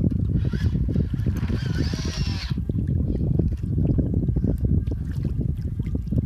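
Wind buffeting the microphone in gusts, with some water lapping, over open water. In the first half, a brief, high call with a wavering pitch sounds once.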